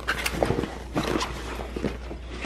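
Fabric and packaging rustling as a hand rummages inside a cloth tote bag, with scattered small crackles and ticks.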